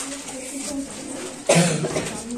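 Voices talking quietly, then one sudden loud cough about one and a half seconds in.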